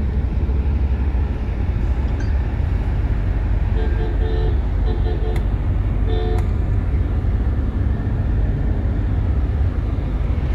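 Steady low road and engine rumble inside the cabin of a moving Tata Safari, with a few brief faint tones around four and six seconds in.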